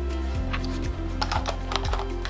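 Plastic clicks and rattles as a lithium-ion battery pack is handled and fitted into the battery compartment of a Godox V860II speedlight, with a quick run of clicks from about a second in. Background music plays underneath.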